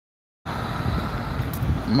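The audio drops out completely for about half a second, a gap left by a failing livestream connection. Then comes steady road traffic with wind on the phone's microphone, ending in a spoken word.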